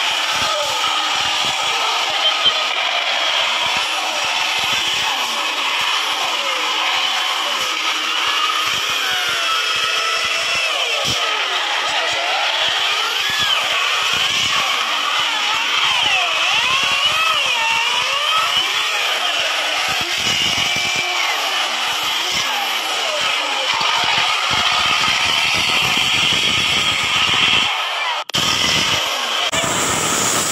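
Modified off-road 4x4 truck's engine revving hard, its pitch rising and falling, as the truck forces its way through grass and mud with its wheels spinning.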